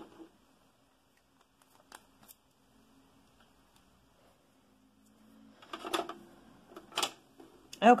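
Light handling on a desk: a few faint clicks as a small ink sample vial and its cap are put away, then louder rustling with two sharp clicks in the last few seconds as the paper swatch card is handled.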